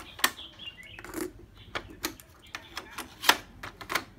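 Sharp plastic clicks and clunks from handling a Sony double-cassette boombox: a cassette and the tape-deck doors and keys being worked. There are about half a dozen separate clicks, the loudest a little past three seconds in.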